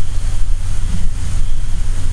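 A loud, steady low rumble of background noise with no distinct events.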